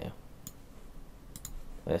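Computer mouse clicks: one click about half a second in, then two quick clicks a little later.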